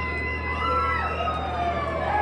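Electric guitar through an amplifier, holding long sustained notes that bend and slide downward in pitch, over a steady low amplifier hum.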